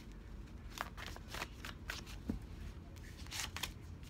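A deck of cards being shuffled and handled by hand: soft, irregular slides and light clicks of card against card.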